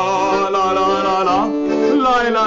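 A man holds a long sung note with vibrato over accordion chords. The voice bends and stops about one and a half seconds in, and the accordion carries on with steady held chords.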